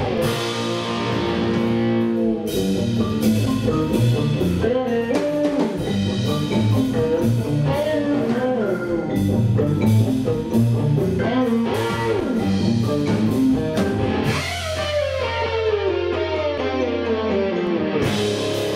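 Live instrumental rock-fusion band playing: electric guitar over electric bass and drum kit, with bending guitar notes. Near the end the drums drop out, leaving a held low bass note under a long falling glide.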